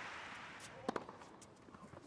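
Tennis rally on a hard court: a few sharp knocks of a tennis ball off racket strings and court, the clearest a little before a second in, over a faint hush of the stadium crowd.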